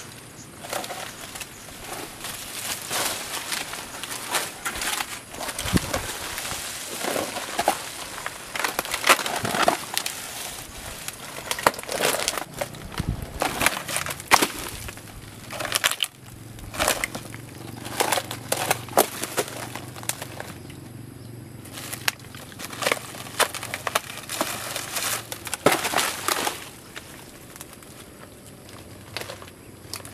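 Dry, rotting oil palm frond bases and trunk fibre being torn and broken apart by hand: irregular crackling and snapping, sparser near the end.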